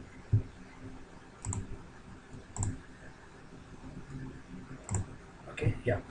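A few separate, faint computer mouse clicks, about four spread over several seconds, over quiet room noise.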